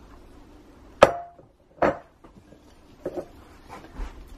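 Hard soapmaking utensils knocking on the countertop or mold: two sharp knocks just under a second apart, the first and loudest with a brief ring, then two fainter knocks.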